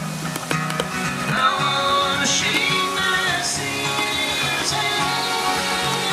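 A band playing a song, with held, pitched notes and a sung melody line.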